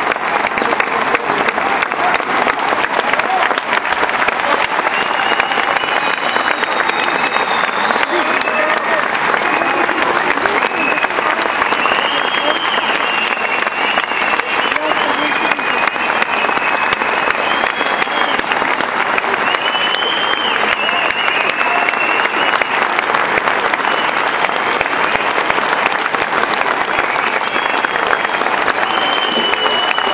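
Concert audience applauding steadily, the clapping running unbroken, with voices calling out and scattered high cheers through it.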